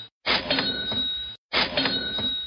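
Cash register 'cha-ching' sound effect, a clatter with a ringing bell, played as a sale cue. It repeats: one full ring of about a second, then another starting about a second and a half in.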